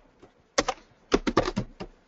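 Typing on a computer keyboard: a single keystroke about half a second in, then a quick run of several keystrokes about a second in.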